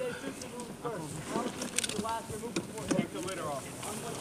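Indistinct men's voices calling out and talking, too faint or muffled to make out, over a steady outdoor hiss, with a few short clicks or rustles.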